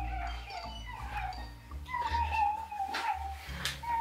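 A girl whimpering in a high, wavering whine: a few drawn-out cries, the longest about a second long in the middle.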